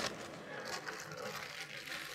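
Faint rustling of a thin plastic bag being handled while a mixer's dough hook is unwrapped from it.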